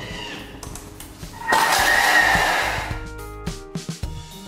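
A Vorwerk Thermomix blending at top speed (speed 10) as its blades chop Raffaello coconut pralines. The loud blade noise starts abruptly about one and a half seconds in and fades out over the next second or so. Background music plays underneath.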